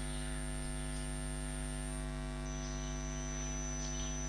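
Steady electrical mains hum in the recording, with a faint high-pitched whine that steps lower in pitch about halfway through.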